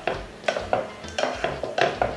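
A wooden spatula stirring and tossing chunks of meat in thick sauce in a coated cooking pot. It scrapes and knocks against the pot about five times, irregularly.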